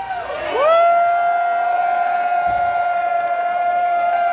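A singer's long, high held note through the PA, sliding up to pitch in the first half second and then sustained steadily, with the crowd cheering underneath.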